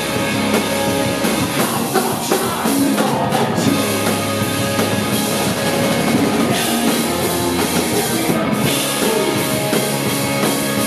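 Punk rock band playing live at full volume: distorted electric guitars, bass and a drum kit keeping a steady driving beat.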